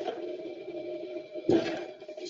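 A long critical room controls airflow valve being handled and turned round on its metal stand, with one clunk about one and a half seconds in, over a steady low hum.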